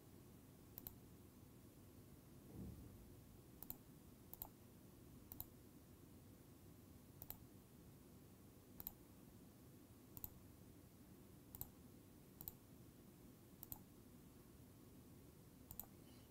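Faint, sharp computer mouse button clicks, about a dozen spaced irregularly a second or so apart, over near-silent room tone. The clicks come as schematic components are placed and wired in a circuit-simulation editor. A soft low thump comes about two and a half seconds in.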